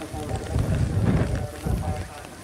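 Wind buffeting the microphone in low, uneven gusts, loudest through the middle, over faint voices.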